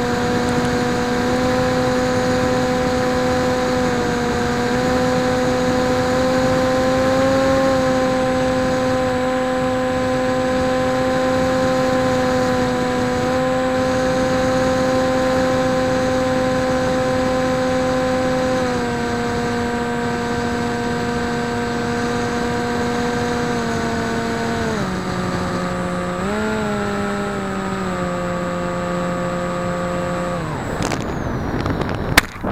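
Electric motor and propeller of a PopWing foam flying wing, heard from its onboard camera in flight: a steady buzzing hum with a light rush of air. The pitch steps down about 19 and 25 seconds in, rises briefly, then falls again near the end as the throttle is eased back for the low approach.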